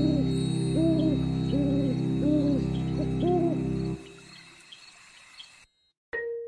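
Owl hooting sound effect, about five short hoots a little under a second apart, over a sustained music pad. The pad stops about four seconds in and the sound fades out.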